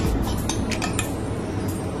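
Metal spoon clinking against a metal saucepan as pepper sauce is spooned out of it, a few light clinks over a low steady hum.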